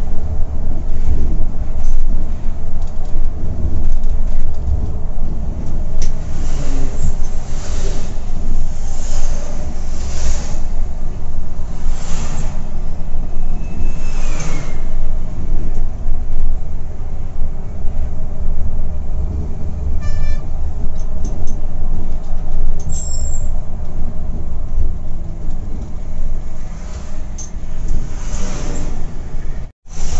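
Volvo B11R coach's rear-mounted diesel engine and road noise heard from inside the driver's cabin at highway speed: a steady deep rumble with rushes of wind and tyre noise swelling every couple of seconds. A few short tones sound over it, and the sound cuts out for an instant near the end.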